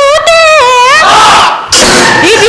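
A woman's high voice holding one long wordless sung note in a Bihu song, dipping in pitch about halfway and rising again, then a brief rush of noise near the end.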